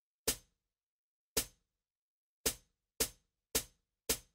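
Count-in clicks at 110 bpm: two clicks on every other beat, then three quicker clicks on each beat, counting in the band.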